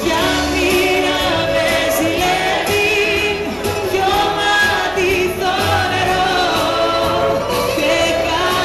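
Live Greek band music with singing: a wavering sung melody over plucked strings and a steady bass line.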